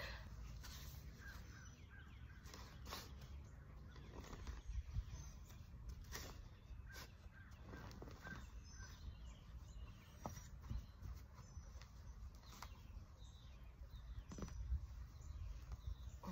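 Faint, scattered knocks and scrapes of a digging fork being worked into turf and grass clumps being torn out of the soil, with a bird chirping faintly now and then.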